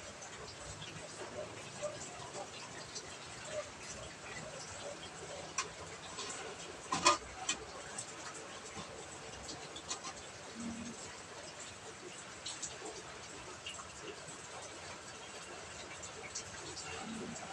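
Hamsters moving about a wire cage on wood-shaving bedding: faint scattered rustles and small clicks, with one sharper click, the loudest sound, about seven seconds in.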